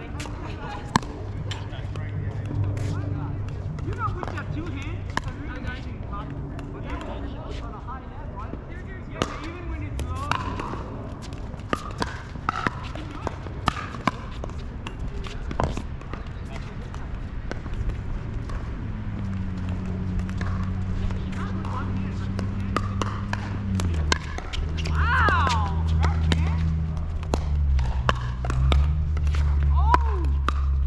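Pickleball rally: repeated sharp hits of paddles striking a hollow plastic ball, some close and some across the net, at irregular intervals. A steady low hum runs beneath and shifts in pitch in steps during the second half.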